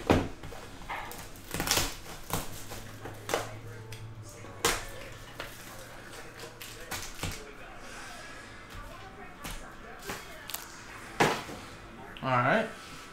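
Clear plastic shrink-wrap being peeled off a trading-card hobby box, then the box opened and the foil packs handled and stacked: plastic crinkling broken by a handful of sharp clicks and knocks.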